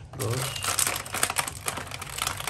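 Clear plastic blister packaging crinkling and crackling as hot-melt glue sticks are pulled out of it, in a dense, irregular run of crackles.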